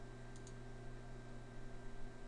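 Two faint, quick computer mouse clicks a third of a second in, over a steady low electrical hum.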